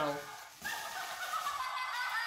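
A toy witch doll's built-in sound module going off, set off by lifting the doll by its handle: a high-pitched electronic squeal lasting about a second and a half, sliding a little lower near the end.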